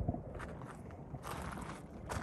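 Quiet footsteps on gravel, two scuffing steps about a second apart.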